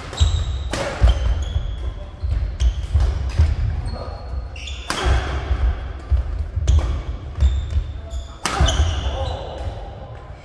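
Badminton doubles rally on a wooden indoor court: a string of sharp racket strikes on the shuttlecock, with shoe squeaks and thudding footfalls between them.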